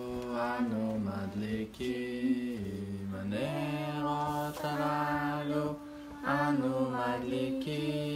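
A man singing a slow, chant-like tune in long held notes that step up and down in pitch.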